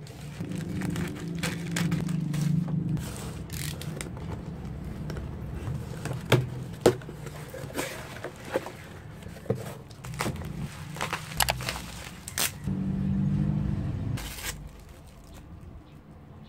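Parcel packaging being handled and opened: a plastic courier pouch crinkling and rustling, then a cardboard box being opened and rummaged through, with a run of sharp clicks and taps in the middle.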